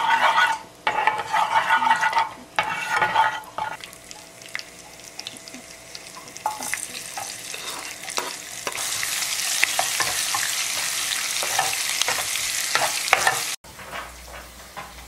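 A metal spoon stirring and scraping in a small saucepan of hot oil, with ringing clatters, then sliced shallot and garlic dropped in and sizzling. The sizzle rises a few seconds later, about halfway through, and holds steady.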